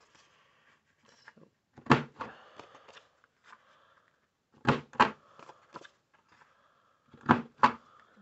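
Corner-rounder punch on a Stampin' Up! Envelope Punch Board pressed through card stock, sharp snapping clicks: one about two seconds in, then two quick pairs near the middle and near the end. Card stock rustles faintly as it is turned between punches.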